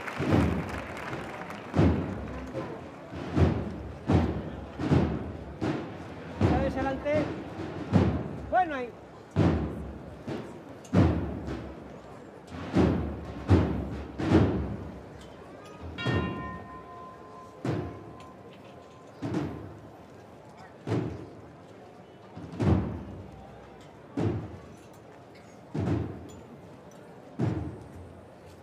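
A processional drum beating a slow, regular march of deep strokes, about one a second at first and then slowing to roughly one every second and a half. From about halfway a faint steady held tone sounds over the beat.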